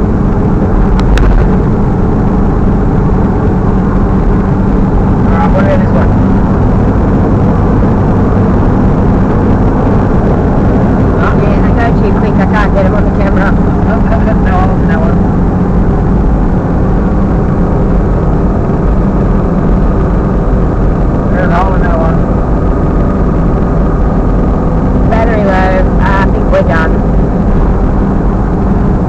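Steady drone of a vehicle's engine and tyre noise on a sealed road, heard from inside the cabin while driving.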